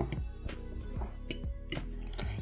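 Soft background music with a few light clicks of a metal fork against a glass bowl as noodles are stirred in broth.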